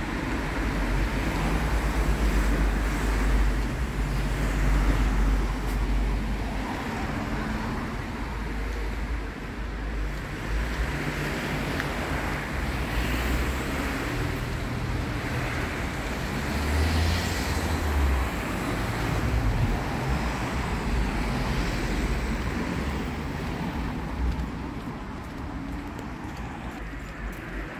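Outdoor street ambience of road traffic, a steady noise with a deep rumble that is strongest for the first several seconds and swells again about two-thirds of the way through.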